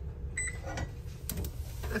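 An electronic oven control gives a short high beep as it is switched to broil, followed by a few sharp clicks, over a steady low hum.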